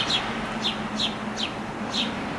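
A small bird calling: a run of short, high chirps, each falling in pitch, repeated about two or three times a second, over a steady low hum.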